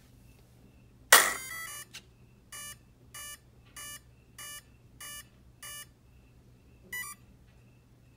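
An electric RC truck's electronic speed controller powering up: a loud click as the truck is switched on, a short run of start-up tones, then six evenly spaced beeps about two-thirds of a second apart and one last short beep near the end.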